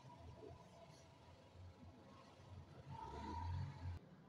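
Faint low rumble that grows louder near the end, with soft handling sounds as stiff net is worked by hand.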